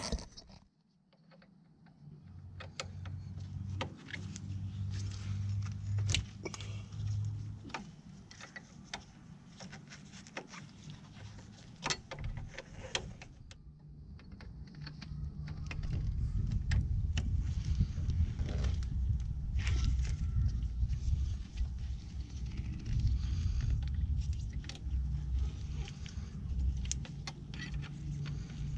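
Scattered metal clicks and clinks of hand tools and bolts as the front brake caliper's 8 mm Allen bolts are worked out and handled. A low steady rumble runs under them for most of the time, loudest in the second half.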